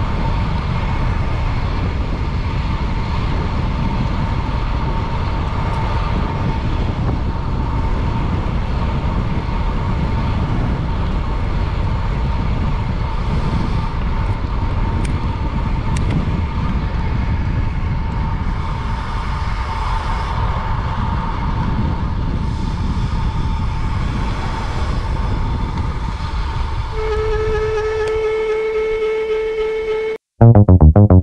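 Wind rushing over a handlebar-mounted camera's microphone as a road bike coasts at about 25–30 mph, with a thin steady whine running through it. Near the end the wind noise falls away and a steady pitched tone comes in.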